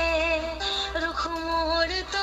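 A song with a sung melody of long held notes playing through a phone's speaker held to the microphone: the caller tune heard while the call rings.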